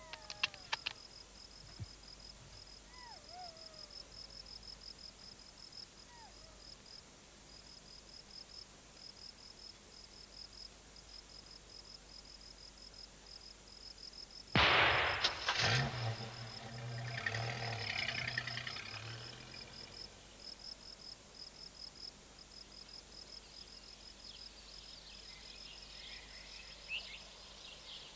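A single rifle shot about halfway through, sudden and loud with a short echo, followed by a few seconds of lower rumbling. Behind it, night insects chirp steadily and fast throughout, and a few sharp clicks come right at the start.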